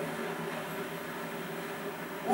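Steady background hiss and room tone from an old videotape recording, with no distinct sound event.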